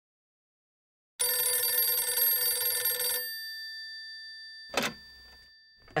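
Telephone bell ringing once for about two seconds, its tone dying away slowly after the ring stops, followed by a short clunk near the end.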